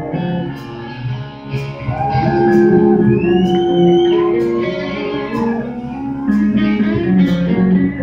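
Live rock band playing an instrumental passage between vocal lines: electric guitar holding and sliding notes over bass guitar and a steady drum beat.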